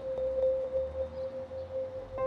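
Background music score holding one steady sustained note.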